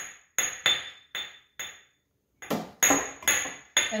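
A toddler banging a metal spoon on metal, about a dozen sharp clinks, each with a short high ringing note, two or three a second with a brief pause about halfway.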